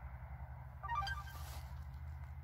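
A preset notification tone on a CUBOT Quest Lite 4G phone, previewed from its notification-sound list: a short, quick run of bright electronic blips about a second in, over a steady low rumble.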